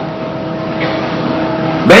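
A steady low drone with two faint held tones running under it, without any change in pitch or rhythm.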